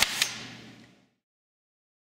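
MS series automatic plastic banding machine finishing its cycle: a sharp click about a quarter second in, then the mechanism's sound fading out and cutting off about a second in.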